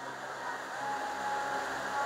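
Faint steady hum in the pause, with a thin held tone lasting about a second in the middle.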